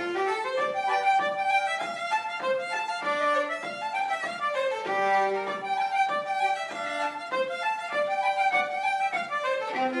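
Fiddle and concertina playing a traditional Irish reel together in a quick, unbroken run of notes.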